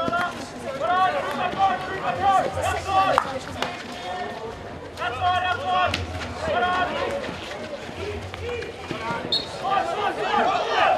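Field hockey players shouting calls to one another on the pitch in high, raised voices, with several sharp clacks of sticks hitting the ball.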